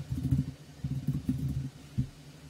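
Computer keyboard typing in two short, uneven runs, heard mostly as low thuds, then a single sharp click near the end as the entry is submitted.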